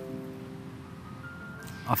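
Soft background music of held, sustained notes in a pause between speech, the notes changing pitch partway through; a brief spoken syllable comes right at the end.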